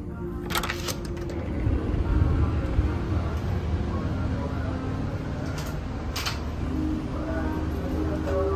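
Sharp clicks from an electronic keycard door lock and lever handle as a hotel room door is unlocked and opened about half a second in. A low rumble of movement follows, with a couple more clicks later. Soft background music plays at the start and returns near the end.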